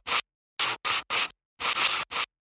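Sandpaper rubbed over wood in about five short strokes with silent gaps between them, smoothing a rough wooden pole.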